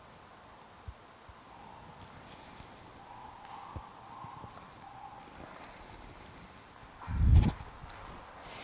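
Faint movement noises and small clicks from a person holding a deep lunge and hamstring stretch on a rubber gym floor, then one loud, low thump about seven seconds in as he comes back up to standing.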